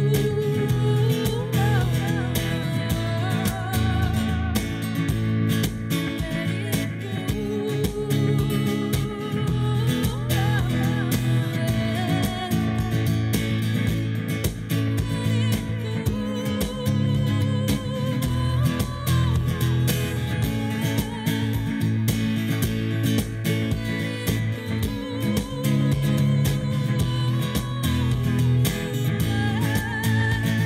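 A woman singing a song to her own acoustic guitar accompaniment, the guitar strummed and picked beneath a wavering, sustained vocal line.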